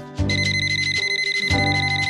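Mobile phone ringing: a high, rapidly trilling electronic ring that starts about a quarter second in and keeps going.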